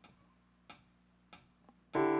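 Drummer's count-in: three sharp clicks about two-thirds of a second apart. The band comes in on keyboard and guitar right at the end.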